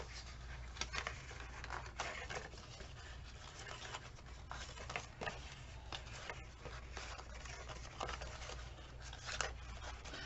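Paper being folded and pressed by hand, its scored flaps bent in along the creases: faint, irregular rustling and crinkling over a low steady hum.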